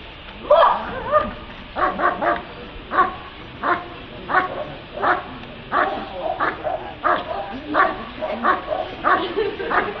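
A dog barking repeatedly at a steady rhythm, about one and a half barks a second, starting about half a second in. It is barking at a helper who stands still holding a bite sleeve, the hold-and-bark guard of protection work.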